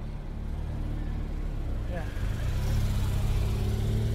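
Motor vehicle engine running close by on the road, growing louder in the second half as traffic passes near.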